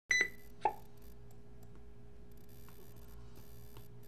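Two short electronic beeps, the first higher-pitched and the second lower about half a second later, then a steady low electrical hum with a few faint clicks.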